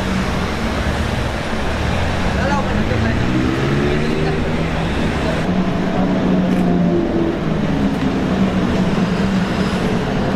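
Slow-moving cars and a tour bus rounding a tight hairpin, their engines giving a steady low hum, with people talking nearby.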